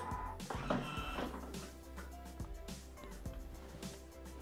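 Quiet background music, with a few faint knocks and clicks as the lid of a Thermomix TM5 mixing bowl is unlocked and lifted off.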